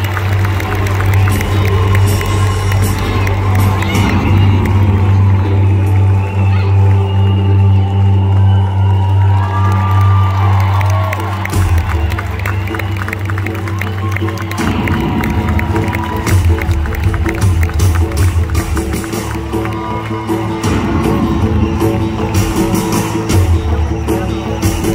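Loud live-concert music over the stage PA with a crowd cheering and whooping over it, for the band's entrance. The music changes character about halfway through.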